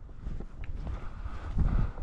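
Footsteps swishing through tall grass, with wind rumbling on the microphone.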